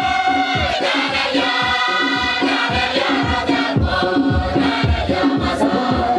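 Large mixed choir of men and women singing a church hymn together, over a steady low beat of about two strokes a second.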